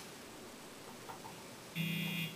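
Quiet room tone for most of the stretch, then a short buzzing tone near the end lasting about half a second.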